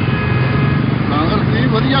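A man's voice speaking over steady background noise of an outdoor crowd, with a low hum underneath.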